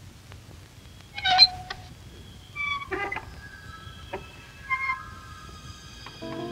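A wooden door creaking open in a few short, high squeaks, with steady chime-like tones of the soundtrack music sounding from about halfway through.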